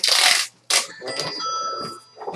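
A loud rustle of packaging, then a second shorter rustle, followed by a thin bell-like tone ringing for about a second.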